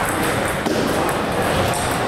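Table tennis balls clicking off rackets and tables, with several games going at once in a large hall.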